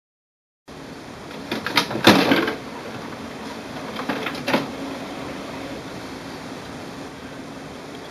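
The plastic front cartridge access door of an HP OfficeJet Pro 9015 printer being pulled open, with a few clicks and knocks about two seconds in and another click a couple of seconds later. A faint steady hum follows.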